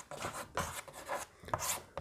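Chalk writing on a blackboard: a run of short scratching strokes.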